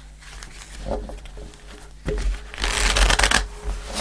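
A deck of tarot cards being shuffled by hand: quiet rustling at first, then a louder burst of rapid card-against-card shuffling about three seconds in, lasting under a second.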